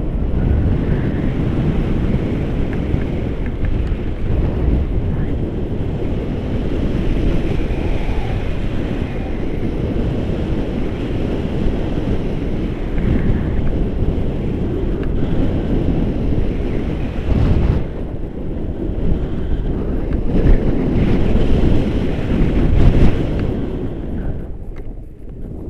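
Airflow from a paraglider in flight buffeting a handheld camera's microphone: a loud, continuous low rumble that swells and eases in gusts, loudest near the end.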